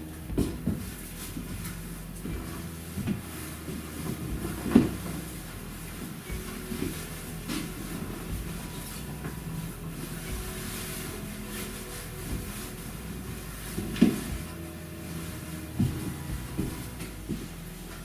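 A person moving about on a hard floor: a few scattered soft thumps of footsteps and handling, the loudest about five seconds in and again about fourteen seconds in, over a low steady hum.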